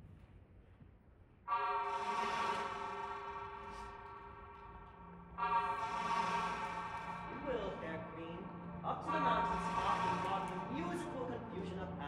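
A hunting horn sounded three times, each blast a single steady note: the first comes suddenly about a second and a half in and is held for several seconds, and the next two follow shortly after and are shorter. It is the horn call for the entrance of Theseus's hunting party.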